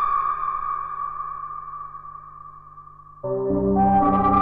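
Electronic ambient music: a held synthesizer tone slowly fades away, then a dense low synthesizer chord cuts in suddenly about three seconds in.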